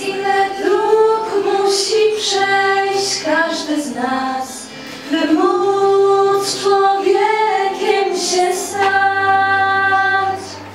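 A group of teenage girls singing a song into microphones, holding long notes over low sustained notes underneath. The singing eases off briefly about four seconds in, then comes back.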